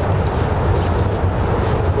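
Steady low outdoor rumble of urban background noise, with faint rustling of a bag and drawstring sack being handled.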